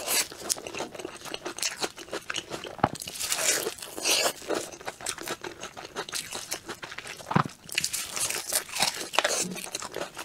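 Close-miked biting and chewing of a wafer-topped sponge cake, crunching with many short crackly clicks and a few louder bites.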